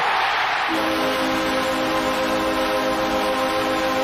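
Arena crowd cheering a home-team goal, and about a second in the arena's goal horn starts: one long, steady multi-tone blast.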